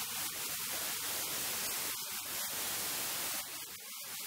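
Steady hiss of static, like white noise, filling the sound track.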